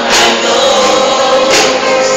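A large group of children's voices singing a song together in unison, with sustained notes.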